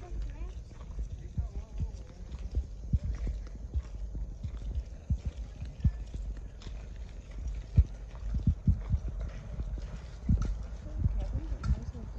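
Footsteps on a gravel path: irregular low thumps and crunches of walking, with the rumble of a handheld phone microphone being carried.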